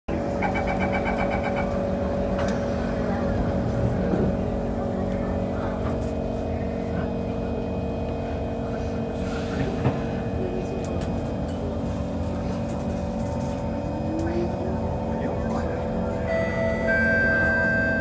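SMRT C151 metro train: a chime of rapid beeps at the start, typical of the door-closing warning, over the steady hum of the train's equipment. Near the end new whining tones come in from the traction equipment as the train pulls out of the station.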